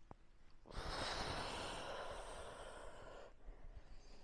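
A woman's long audible exhale, a breathy rush lasting about two and a half seconds. It starts about a second in, loudest at the start and trailing off. She is breathing out as she lowers from arms overhead into a forward fold.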